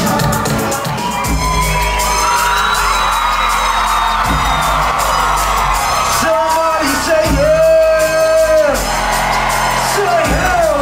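Live concert music played loud over a PA, with long held sung notes over a heavy bass beat and hi-hats. Whoops and yells from the crowd come through the music.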